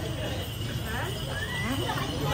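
Several men's voices talking and calling out close by, with a short rising call near the end.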